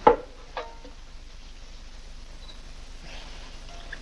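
A quiet stretch of steady, faint soundtrack hiss. It is broken right at the start by one short sound falling in pitch, and by a brief pitched sound about half a second in.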